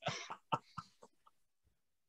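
A person's short, faint, breathy vocal sounds over a video call: three brief bursts within the first second.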